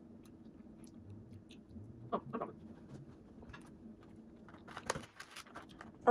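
Faint chewing and soft mouth clicks from a person eating a bite of frozen pie, with a few short smacks about two seconds in and again near the end.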